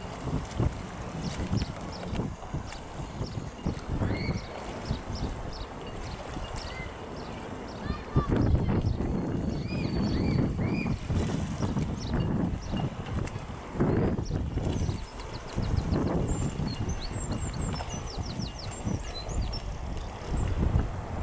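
Outdoor waterside ambience: wind buffeting the microphone in uneven gusts, with scattered high bird chirps and a quick high trill near the end.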